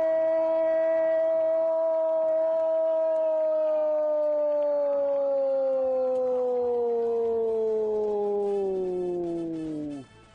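A Brazilian football commentator's drawn-out goal cry, "gooool", one long held note for about ten seconds. The pitch holds steady for the first half, then sinks slowly before the cry cuts off at the end.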